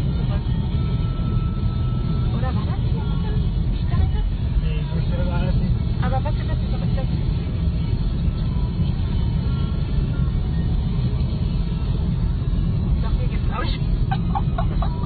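Road and engine noise inside a moving car's cabin at about 75 km/h: a steady low rumble, with faint voices now and then.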